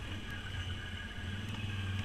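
Can-Am Outlander ATV engine running steadily as the quad rides along a trail, a low even drone.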